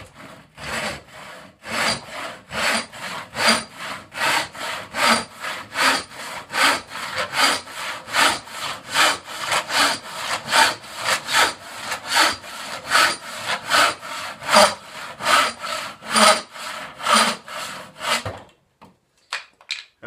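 Freshly sharpened Disston hand saw cutting into a board held in a vise, in fast, even strokes of about two and a half a second, each a rasp of teeth biting wood. The sawing stops near the end.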